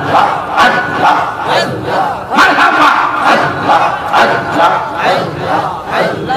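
Loud zikir chanting: men's voices calling God's name in forceful, rhythmic repeated shouts, amplified through microphones.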